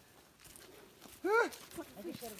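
Faint footsteps of several people on a dirt trail, then about a second in a short vocal sound, a brief 'ah' that rises and falls in pitch, the loudest sound.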